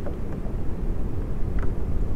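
Wind on the camera microphone, a steady low rumble, with two faint clicks.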